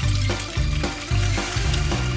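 Background music with a steady bass beat, over a faint sizzle of a ham-and-cheese sandwich frying in a non-stick pan.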